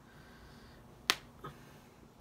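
One sharp click about a second in, then a fainter one a moment later, from handling the socks' packaging.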